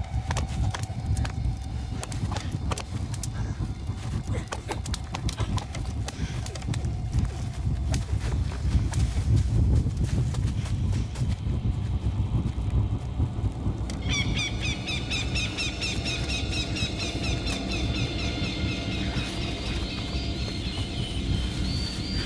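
Jungle scene from a film soundtrack: a heavy low rumble under crackling, snapping and thudding. About two-thirds of the way in, a fast, evenly repeating high chirping sets in and continues.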